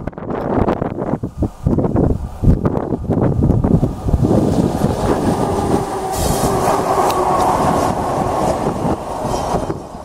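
ZSSK Cargo class 131 two-section electric locomotive passing close by: its wheels clatter over the rail joints through the first few seconds, then a steady rushing noise with a hum as the units go past.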